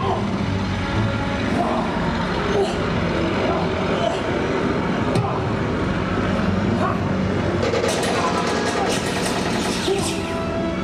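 A steady engine drone with voices shouting over it, and a quick run of sharp clicks near the end.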